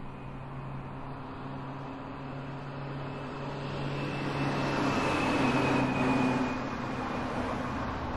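A vehicle passing over a steady low hum: the noise swells, peaking about five to six seconds in with a faint high whine, then eases off.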